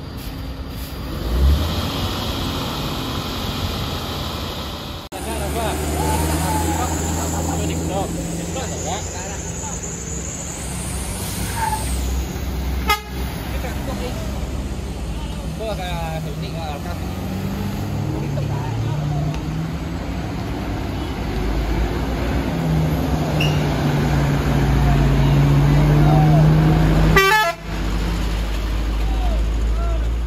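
Heavy MAN truck's diesel engine running under load as it hauls a crawler crane on a lowboy trailer up a steep hairpin. The engine gets louder from about two-thirds of the way through and breaks off abruptly near the end.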